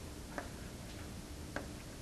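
Quiet room tone with two faint, short clicks a little over a second apart.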